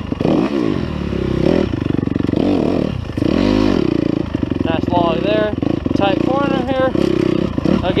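Dirt bike engine being ridden hard, its pitch rising and falling again and again as the throttle is opened and shut.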